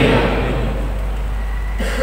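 A pause in a man's speech over a microphone and sound system: a steady low mains hum with a faint hiss.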